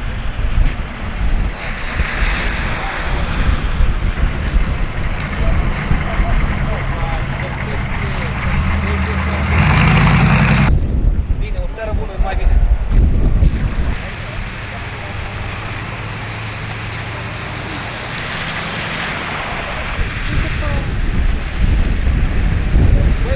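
Cars running slowly at a roadblock, their engine rumble mixed with wind on the microphone, and faint voices now and then. A louder stretch about ten seconds in stops abruptly.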